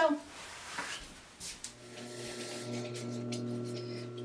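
Industrial sewing machine's motor humming steadily, switched on a little before halfway in. The hum holds one unchanging pitch with no stitching rhythm, so the machine is running but not yet sewing.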